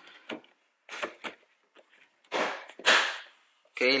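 Plastic window-switch panel pressed back into a car's door trim: a few clicks, then two sharper snaps in the second half as its clips lock in.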